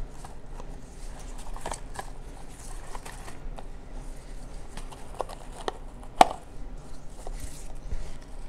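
Satin ribbon and card stock being handled on a tabletop while a bow is tied around a paper book box: soft rustling and scattered light taps, with one sharper tap a little after six seconds in.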